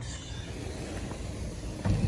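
Steady outdoor noise with an uneven low rumble, like wind on a phone microphone, and a louder thump near the end.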